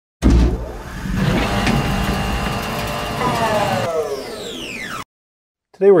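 A motor vehicle engine sound: a sudden low thump opens it, the engine runs and revs, and its pitch falls near the end as if it is passing by, then cuts off abruptly about five seconds in.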